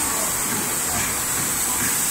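Steady hissing roar of a glassworks hot shop, its gas-fired furnaces and blowers running without a break.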